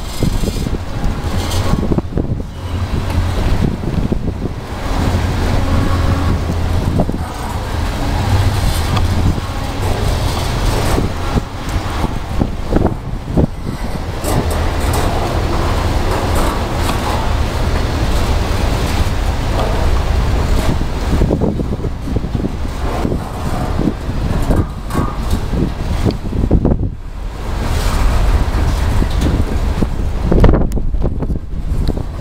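Intermodal container freight cars rolling past close by: steady wheel-on-rail noise with rattling and clatter from the cars. Wind buffets the microphone, adding a deep rumble.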